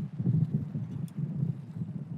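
Wind buffeting the microphone outdoors, a low, uneven rumble.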